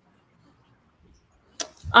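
Near silence for about a second and a half, then a short click and a woman's voice starting a drawn-out "um" near the end.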